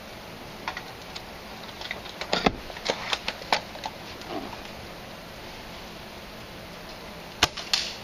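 Novritsch SSG24 spring-powered airsoft sniper rifle shooting: a sharp crack about two and a half seconds in, a few lighter clicks just after it, and another sharp crack near the end.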